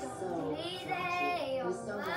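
A child singing a melody, with held notes that glide up and down.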